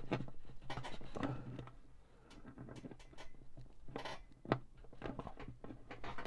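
Faint small clicks and scrapes of fingers working guitar strings and bridge pins into an acoustic guitar's bridge while the string ball ends are seated, the sharpest clicks about four and four and a half seconds in.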